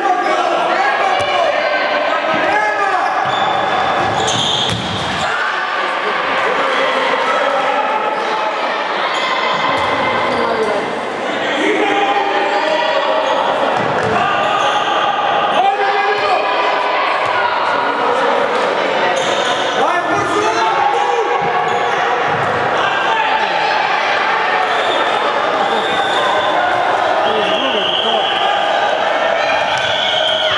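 A handball bouncing on a hardwood sports-hall floor during play, with players' and spectators' voices and shouts throughout, in the echo of a large hall.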